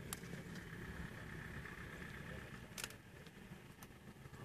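Two young cheetahs feeding on a duiker carcass, with a couple of faint sharp clicks of chewing and tearing over a low rumble.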